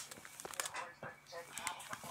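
Faint, indistinct voices in the background, with a few sharp clicks and rustles of handling close to the microphone.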